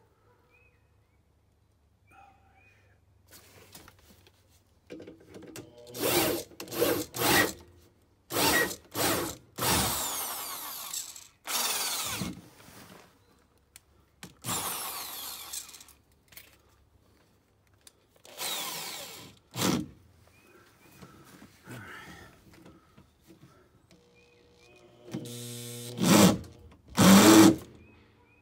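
Ryobi power drill with a socket adapter spinning a scissor jack's screw to raise the car, run in a string of short bursts with pauses between them. The last burst, near the end, is the loudest.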